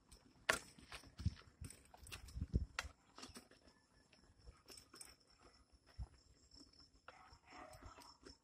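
Faint, irregular clicks and low thumps of footsteps and phone handling while walking on a brick road, over a faint steady high-pitched hum.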